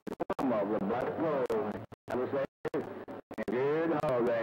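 A man's voice received over a CB radio, too garbled to make out words and breaking up, with the signal cutting out abruptly several times.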